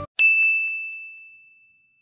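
A single bright ding sound effect, like a small bell struck once, about a fifth of a second in, ringing one clear high tone that fades away slowly.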